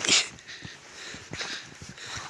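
Footsteps crunching through deep snow, a step roughly every half second, with a sharper, louder crunch of noise just after the start.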